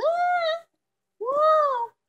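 Two high-pitched, meow-like calls, each about half a second long, rising and then falling in pitch, with a short silence between them.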